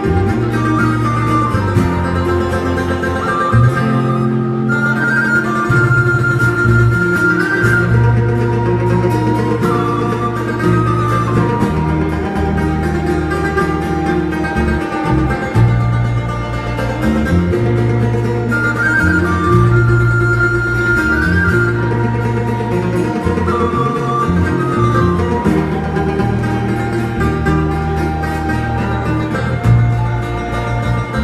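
Live instrumental break on banjo, acoustic guitar and electric bass guitar, with no singing: the bass moves between held notes every second or two under a plucked melody line.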